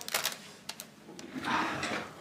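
Packaged sandwich being handled, the packaging crinkling and clicking in short bursts, then a longer, louder rustle in the second half.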